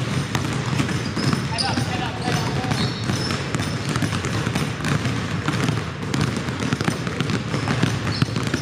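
Many basketballs dribbled at once on a hardwood gym floor: a dense, overlapping stream of bounces with no pause, echoing in the hall, over voices.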